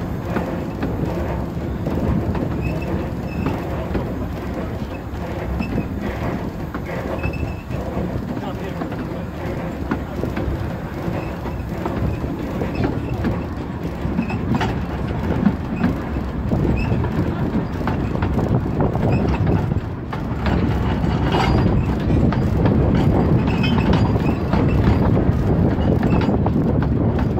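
Narrow-gauge passenger train hauled by the Decauville 0-4-0 steam locomotive Edgar, running along the line and heard from inside a carriage, with wheels clicking over the track. The sound grows somewhat louder toward the end.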